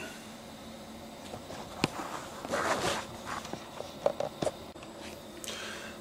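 Faint rustling and a few scattered sharp clicks and knocks close to the microphone, with a short rustle about halfway through.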